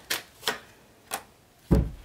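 Tarot cards being handled: three short, sharp clicks about half a second apart, then a louder thump near the end as a card is laid down on the spread.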